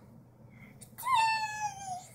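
A young child's high-pitched, drawn-out squeal, starting about a second in and lasting about a second, with a quick rise then a slow fall in pitch.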